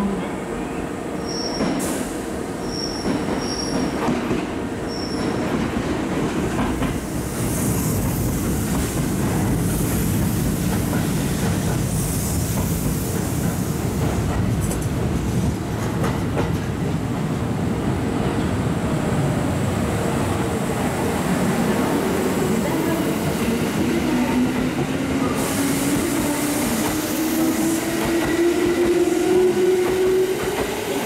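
Kintetsu 2430-series and 2610-series electric train pulling into the station, with steady wheel and rail noise as the cars come alongside. A whine rises steadily in pitch over the last several seconds.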